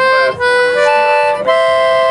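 Two-row Anglo concertina sounding a few held reed notes, with a short break about a third of a second in and a change of note about one and a half seconds in: the same buttons giving one note as the bellows push in and another as they draw out.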